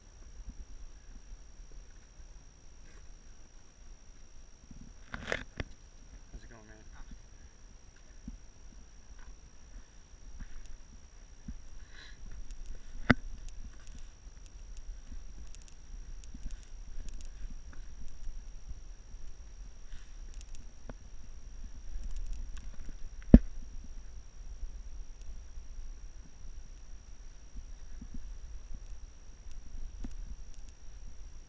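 Wind rumble and handling noise on an action camera carried while scrambling over rock, with small scuffs and ticks of steps and gear. Two sharp knocks about ten seconds apart, the second the loudest, and a faint steady high whine runs underneath.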